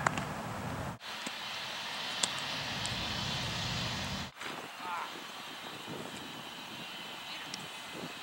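Outdoor ambience on a baseball field: a steady low rumble with a few sharp knocks, the loudest right at the start. It breaks off abruptly about a second in and again past four seconds, then goes on quieter with faint voices.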